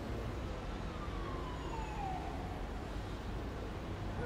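Steady street traffic noise with one siren wail that falls in pitch over about two seconds, starting about half a second in.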